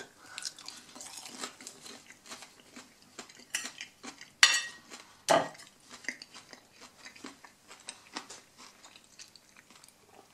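Chewing a bite of pan-fried breaded chicken schnitzel, with many small crackles from the breading. About halfway through, a few sharp metal clinks and a knock from a kitchen knife against the plate and table.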